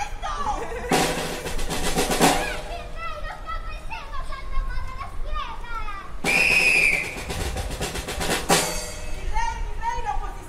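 Excited voices calling out on stage, cut through by two bursts of drum roll, about a second in and about six seconds in; a short high shriek rises over the second burst.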